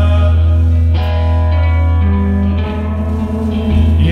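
A rock band playing live through a large PA: electric guitar over a heavy, steady bass, with sustained chords.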